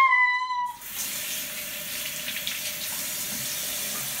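A held sung note trails off, then a bathroom faucet runs into a sink in a steady rush of water for the rest of the time, with a faint steady tone beneath it.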